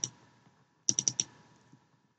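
Computer mouse button clicks: a single click at the start, then a quick run of four clicks about a second in, as folders are double-clicked open in a file dialog.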